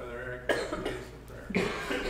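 A person coughing twice, about a second apart.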